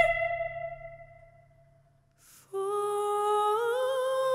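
Operatic female voice: a held high note and its backing fade away, then a short pause with an audible breath. About two and a half seconds in, a soft, unaccompanied new note begins, held steady and then sliding up a step.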